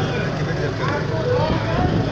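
People talking in the background over a steady low hum.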